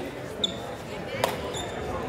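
Wrestling bout on a gym mat over background crowd voices: a brief high squeak about half a second in and another near the end, with a single sharp slap between them.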